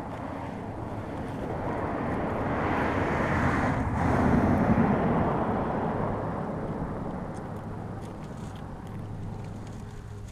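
A motor vehicle driving past: its rumbling noise swells, peaks about halfway through and fades away.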